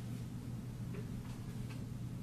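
Quiet room tone: a steady low hum with a few faint clicks in the second half.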